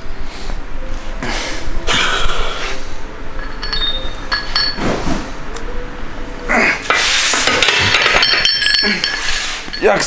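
Heavy loaded barbell on a bench-press rack: steel plates and bar clinking and clanking in the last few seconds as the bar is racked, with the lifter's strained grunts during the grinding rep before it.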